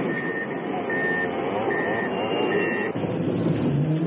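Heavy logging machine running, its reversing alarm beeping about once every three-quarters of a second until about three seconds in.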